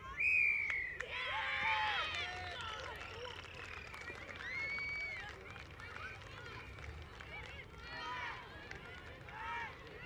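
A referee's whistle gives a short blast with a slight fall in pitch right at the start, blowing full time. Then a group of young children's high-pitched voices shout over one another, loudest a second or two in, with more shouts near the end.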